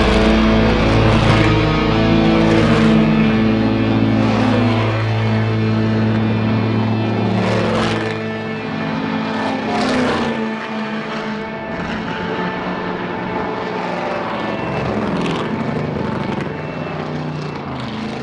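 Heavy rock music fading out over the first several seconds, giving way to vintage V8 muscle race cars running through a corner and passing, their engines rising and falling in pitch as they accelerate and lift.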